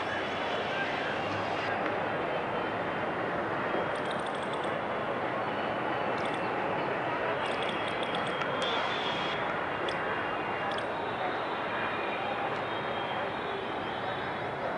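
Steady city ambience: a constant wash of distant traffic noise with faint far-off voices, and a few short high chirps about four and eight seconds in.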